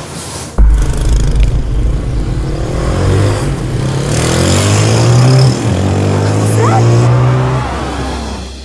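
Motorcycle engine revving and accelerating, its pitch climbing, with a short break a little past halfway before it runs on and then fades near the end. A sudden loud rumble starts about half a second in.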